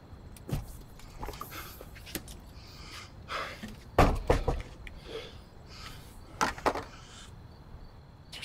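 A man's strained, breathy gasps and grunts of pain, mixed with scuffs and thumps. The loudest is a heavy low thump about four seconds in, and another burst of breaths and knocks comes about two and a half seconds later.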